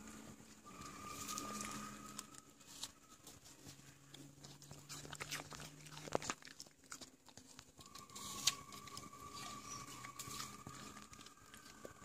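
A Staffordshire bull terrier chewing pieces of apple, a faint run of crisp crunches and clicks, the loudest around the middle and near the end. A faint steady tone comes and goes in the background.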